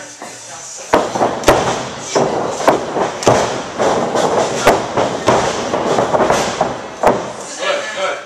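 A run of sharp thuds and slaps, about one every half second or so, as two wrestlers trade worked pro-wrestling punches in a training ring, with voices over them.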